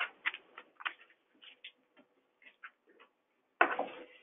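Scattered light clicks and taps, then a louder bump or rustle near the end: handling and movement noise at the microphone as presenters swap places.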